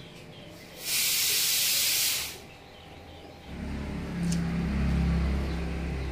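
A loud, steady high-pitched hiss lasting about a second and a half. Then, from a little past halfway, the low running drone of a motor vehicle engine.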